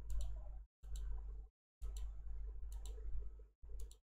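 A series of sharp computer mouse clicks, about eight in all, over a low electrical hum. The sound cuts out to dead silence three times between stretches.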